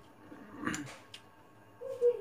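Fingers mixing and gathering rice with aloo eromba in a steel bowl: a short squishy scrape a little over half a second in, then a light click. Just before the end a short low hum-like pitched sound begins.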